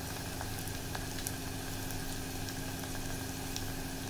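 Onions and whole spices frying gently in oil in a pressure cooker, a quiet steady sizzle with a few faint crackles, over a steady low hum.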